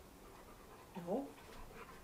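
A mostly quiet room with one short rising vocal "oh" about a second in.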